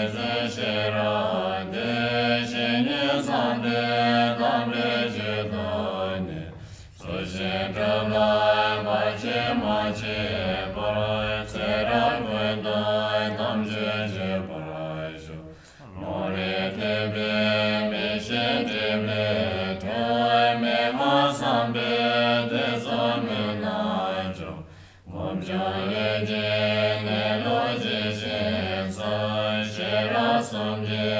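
Tibetan Buddhist prayer verses chanted in a low, steady voice, broken by three short breath pauses about every nine seconds.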